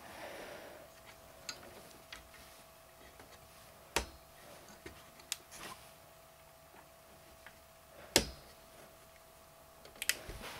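Plastic push-pins of an Intel stock CPU cooler clicking as they are pressed down into the motherboard, with two louder snaps about four and eight seconds in among lighter clicks of handling.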